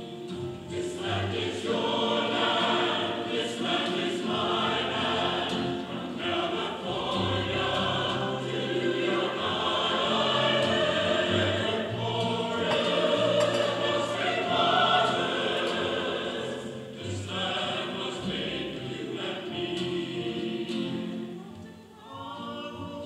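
A small mixed vocal ensemble, men's voices with a woman's, singing a song together in phrases.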